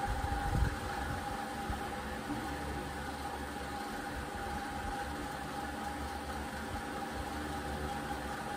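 A steady machine hum with a faint, constant high whine, and a few soft knocks in the first second.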